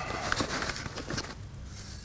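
Hand trowel scooping perlite out of a plastic bag: soft crunching and rustling with a few light clicks in the first second or so, then quieter.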